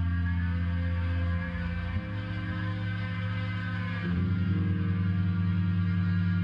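A live band's amplified instruments holding long, sustained low notes, a slow droning passage, with the bass note shifting about one and a half, two and four seconds in.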